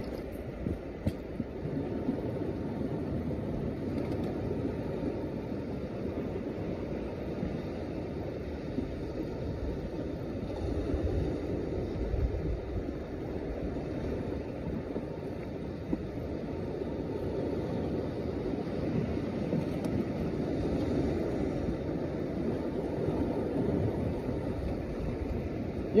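Steady rushing of wind and sea waves at a rocky shoreline, with a few sharp clicks in the first seconds.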